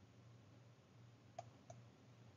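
Near silence: a faint steady low hum, with two faint clicks about a second and a half in, a fraction of a second apart.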